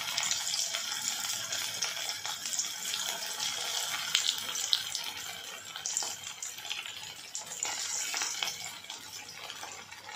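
Half-boiled, flattened baby potatoes deep-frying in hot oil: a steady sizzle with fine crackling, easing a little toward the end.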